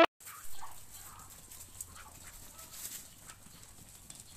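Domestic ducks calling faintly, with one louder call about half a second in and a few soft sounds after it.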